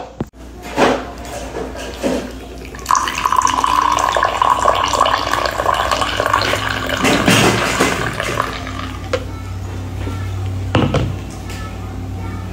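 Coffee poured from a pot into a glass mug: a steady pour and splash that starts about three seconds in and lasts about five seconds, after a few short knocks.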